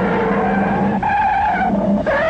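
Science-fiction sound effect from the film's soundtrack: a loud, sustained electronic screech of several wavering tones. It breaks briefly about a second in and starts again.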